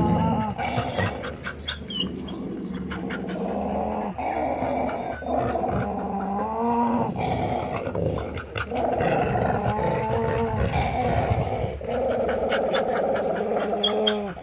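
A dog growling in about four long growls of a few seconds each, with short breaks between. The growls come from a brindle dog that does not like play: a warning growl at puppies crowding him.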